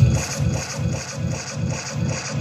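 Reggae dub played loud over a sound system in a crowded hall. At the start the heavy bass line drops out, leaving a steady rhythm of about three hits a second.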